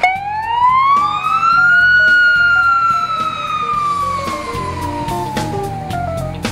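An emergency siren winding up in pitch over about two seconds, then slowly falling for the rest, one long wail. Background music with a drum beat plays underneath.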